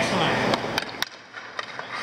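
Hockey skate blades scraping across the ice, then a few sharp clicks.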